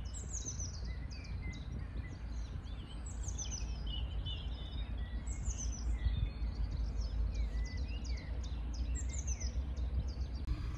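Songbirds singing over a steady low rumble. One bird repeats a short, high phrase that falls in pitch, four times, while other chirps come in between.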